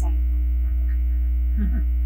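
Loud, steady low electrical hum with a string of fainter steady overtones, typical of mains or ground-loop hum in a microphone and recording chain.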